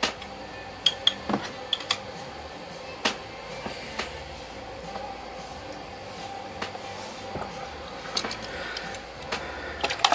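Watercolour brushes and painting supplies being handled: scattered light clicks and clinks, a cluster in the first few seconds and more near the end, over a faint steady hum.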